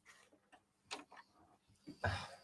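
Near silence: quiet room tone with a few faint, brief clicks.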